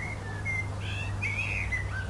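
Common blackbird singing: a phrase of fluty whistled notes that glide up and down, fuller and louder in the second half.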